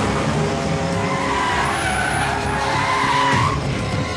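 Car tyres squealing in a skid, a wavering high squeal that is strongest from about one and a half to three and a half seconds in, over a loud, steady rush of vehicle noise.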